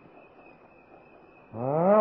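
A pause in a recorded talk with faint hiss and a thin steady high whine. About a second and a half in, an elderly Thai monk draws out a rising 'aah' before his next words.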